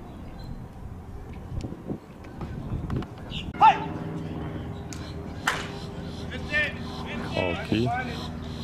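A slowpitch softball bat strikes the ball with a sharp crack about five and a half seconds in, sending it deep to left-center. A short loud shout comes a couple of seconds before the hit, and voices follow it.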